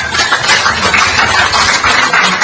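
Audience applauding, a dense, steady clatter of many hands clapping.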